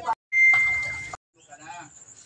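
A short steady high beep with a hiss, fading slightly over under a second and then cutting off abruptly.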